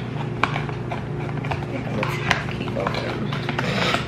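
Scattered light taps and clicks of a glass candle jar and its cardboard box being handled, irregularly spaced a second or so apart, over a steady low hum.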